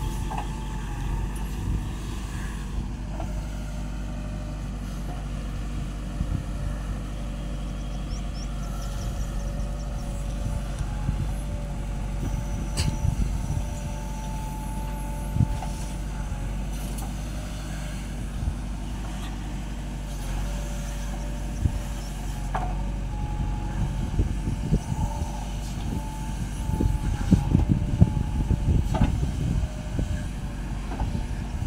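JCB backhoe loader's diesel engine running steadily as the backhoe arm digs and loads sand, with a faint whine that comes and goes and a few sharp knocks. The working gets louder and busier near the end.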